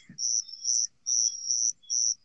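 A cricket chirping in short, high-pitched pulses, about two a second.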